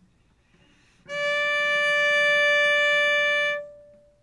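Cello bowed on a single long high D, held at a steady pitch for about two and a half seconds from about a second in, then released with a brief ring-out.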